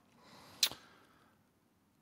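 A faint breathy hiss, then a single short sharp click about half a second in, followed by silence.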